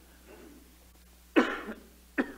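A man coughs once, suddenly and briefly, about a second and a half in, after a near-quiet pause.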